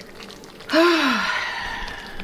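A woman's voiced sigh about two-thirds of a second in. Its pitch rises then falls, and it trails off into a long breathy exhale.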